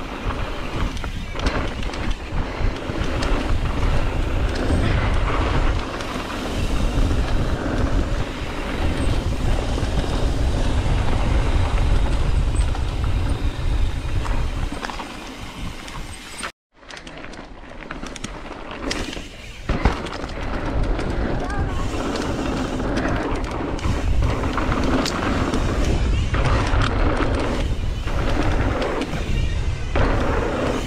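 Wind buffeting the microphone of a bike-mounted camera with a low rumble, over tyre noise on a loose dirt trail as a mountain bike descends at speed. The sound cuts out for a moment just past halfway.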